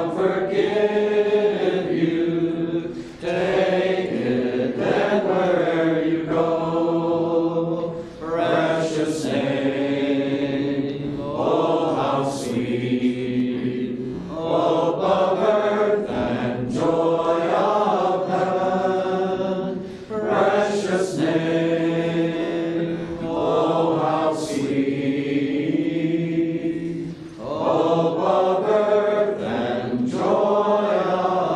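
A congregation singing a hymn together in unison, long held lines with short breaks between phrases every few seconds.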